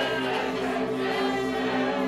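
Live electronic backing music with a steady held drone of several low tones. Over it, a group of voices chants along in a call-and-response.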